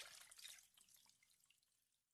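Faint dripping and trickling water, fading away over the first second and a half.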